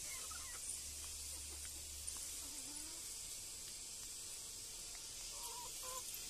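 Faint outdoor yard sound: a steady high hiss with a few soft chicken clucks, one near the middle and another near the end.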